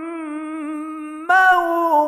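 A single voice in melodic Quran recitation, holding long drawn-out notes with a slight waver. A softer held note gives way about a second and a quarter in to a louder, slightly higher note that slides down near the end.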